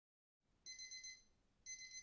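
Phone alarm going off: two faint, high-pitched beeps, each about half a second long and a second apart.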